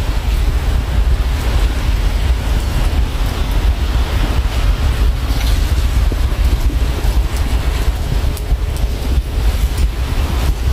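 Wind buffeting the microphone: a loud, unsteady low rumble with a wash of hiss over it.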